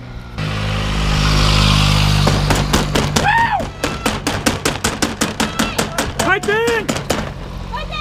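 Spectators cheering racing cyclists as they pass: fast, even clapping or slapping on the barriers, about five strikes a second, with shouts of "Go Kangmi!". Before the clapping starts there is a couple of seconds of rushing noise with a low hum.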